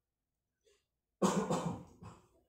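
A man's short cough about a second in, after a pause, as loud as the reading voice around it.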